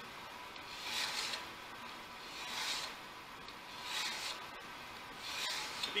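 A hand file rasping across the long edge of a steel card scraper in four strokes, about one and a half seconds apart. This is jointing the edge: filing it flat to take off the crown and the work-hardened steel so that a fresh burr can be turned.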